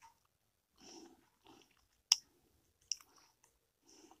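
Faint mouth noises and breaths close to the microphone. There is a sharp click just after two seconds and a softer click a second later.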